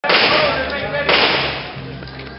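Gunshots from pistols being fired on the range: sharp cracks, one at the start and one about a second in, each ringing out over most of a second, with people talking underneath.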